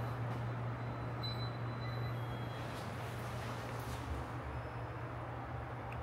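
Steady low hum and even background noise of a subway station platform, with no distinct events.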